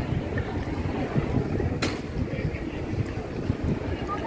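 Wind buffeting the microphone, a gusty low rumble. A single sharp click comes a little under halfway through.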